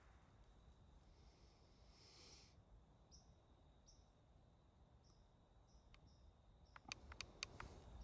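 Near silence outdoors, with faint short high chirps every second or so, and a quick run of sharp clicks about seven seconds in.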